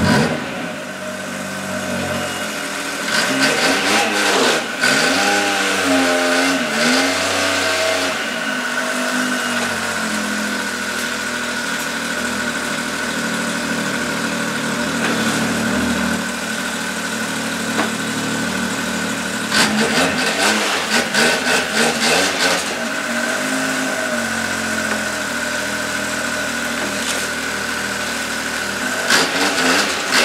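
Arctic Cat XF 7000 snowmobile's 1049cc Yamaha three-cylinder four-stroke engine running while it warms up after its first start in eight months, idling steadily with a few throttle blips that rise and fall in pitch, a cluster about three seconds in and another about twenty seconds in.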